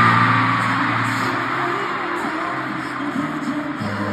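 Live pop concert music recorded from the stadium stands, with a steady low bass note under it. Crowd screaming is loudest at first and then eases off.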